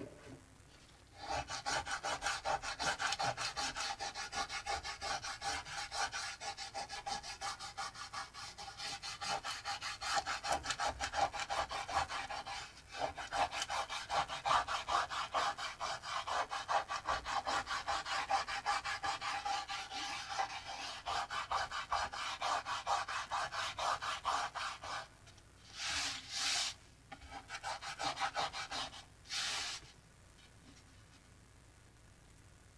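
Fingertips rubbing dried masking fluid off cold-pressed watercolor paper: a fast, continuous back-and-forth scrubbing. It stops near the end, and two short bursts of rubbing follow.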